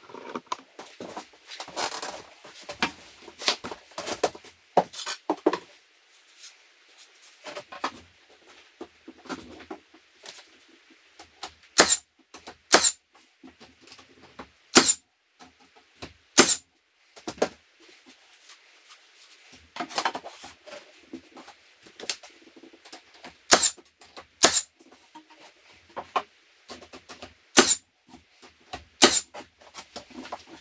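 Cordless nail gun driving nails into wooden siding boards: eight sharp shots from about twelve seconds in, mostly in pairs a second apart. Between and before them come the softer knocks and scrapes of boards being handled and fitted.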